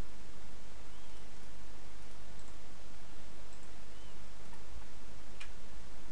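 Steady recording hiss with a low electrical hum, broken by a single sharp click about five seconds in, made while working a computer to load a new web link.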